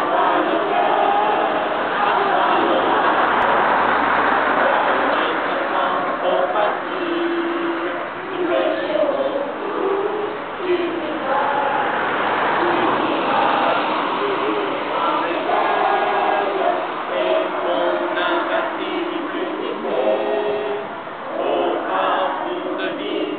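A group of children singing together, held notes carried by many voices at once.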